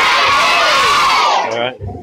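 One long, loud shout held over about a second and a half, its pitch rising and then falling away, amid crowd cheering, amplified through a microphone and loudspeaker.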